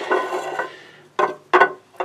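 Light metallic clatter and rubbing as a small stepper motor on an aluminium bracket is handled and lowered into an enclosure box, with two short, sharp knocks in the second half.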